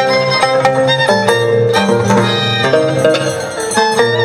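Violin and Andean harp playing a lively scissors-dance (danzaq) tune, with plucked low harp notes under the violin melody.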